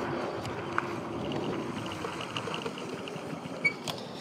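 Fat-tire electric bike rolling over a dirt and grass path: steady tyre and wind noise with a faint hum. The bike is braked hard on its disc brakes and comes to a controlled stop without skidding.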